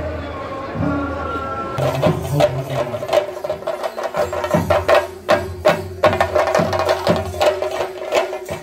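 Crowd voices, then from about two seconds in, temple drums played in a dense, rapid stream of strokes over a steady ringing tone.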